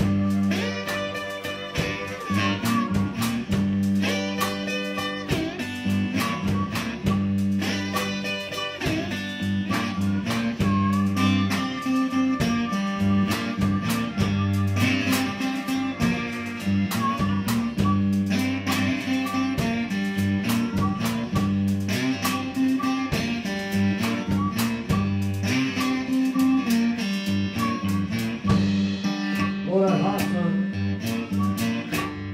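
Live band playing a guitar-led blues instrumental passage, with steady low bass notes under the plucked guitar lines.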